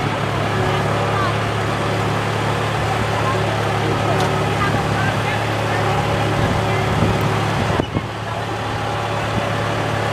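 Farm tractor engine running at a steady pace, pulling a hay wagon and heard from the wagon, a constant low hum.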